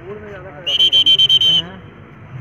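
A pea whistle blown once for about a second, a loud, shrill note that flutters rapidly, over men's voices in the background.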